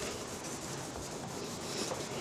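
Cloth rubbing and rustling against a clip-on lapel microphone as a suit jacket is pulled off, a steady scratchy rustle.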